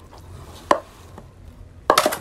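An aluminium pot of raw chicken pieces being handled, with a low quiet rustle. There is one sharp knock about a third of the way in and a louder knock near the end as the pot meets the tiled floor.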